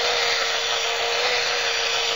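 Grinder grinding the excess solidified iron off a thermit-welded rail joint: a steady whine over an even hiss of grinding.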